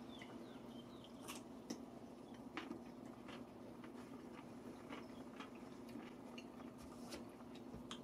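Faint chewing of a pickle wedge with full dentures: soft, irregular crunches and clicks over a low steady hum.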